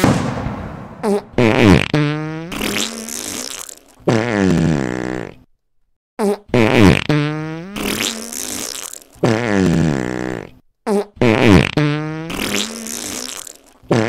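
A run of fart sounds, short pops alternating with longer buzzy, pitched ones whose pitch wavers and slides. There is a brief silence a little before the middle, and then a very similar run of farts plays again.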